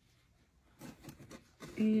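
Mostly near silence, with a few faint soft taps and rubs about a second in as oven-mitted hands shift on an upturned bundt pan; a woman's voice starts near the end.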